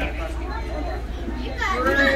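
Children's voices chattering in a large mat room, with one child's high-pitched voice calling out loudly near the end, over a steady low hum.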